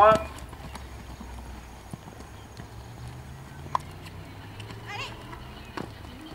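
A pony cantering on a sand arena: hoofbeats with a few sharper knocks.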